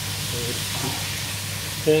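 Chopped onions sizzling as they brown in a stainless steel pot, stirred with a slotted metal spoon. A steady low hum runs underneath.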